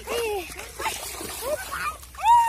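Shallow pond water splashing as hands thrash after a fish, with children's high voices calling out in short cries.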